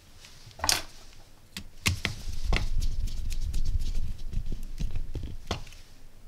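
Handling noise as a wire is fitted into the screw-terminal input of a small DC-DC buck-boost converter module: a few sharp clicks and taps, with a low, uneven rumble through the middle.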